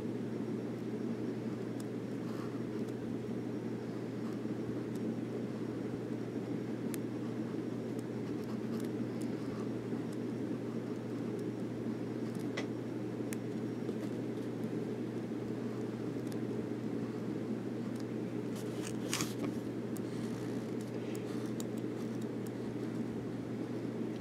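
A steady low hum of room noise, with faint, sparse scratches of a Monteverde Invincia ballpoint pen drawing block letters on paper; a few stronger strokes come about three-quarters of the way through.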